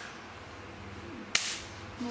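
A single sharp hand clap about a second and a half in.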